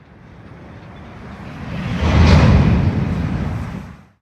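A rumbling, rushing noise that swells to its loudest about two seconds in, holds there, and cuts off abruptly at the end.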